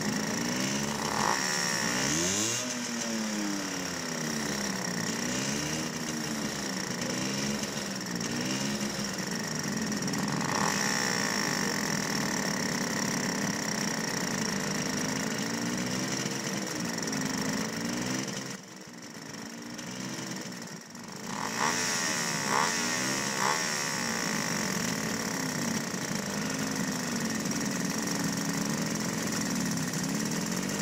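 Small two-stroke moped engines idling while standing still, the idle speed rising and falling unevenly. The engine sound drops briefly about two-thirds of the way through, then comes back.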